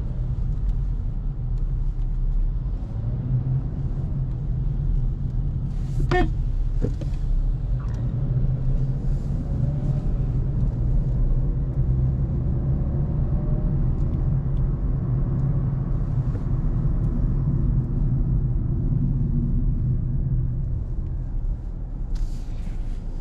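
Engine and road rumble inside the cabin of a 2022 Kia Cerato as it pulls away in traffic and drives on, the engine note rising faintly as it gathers speed. A short, sharp tone sounds about six seconds in.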